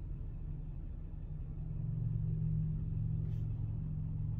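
Low, steady car engine hum that swells a little louder about halfway through.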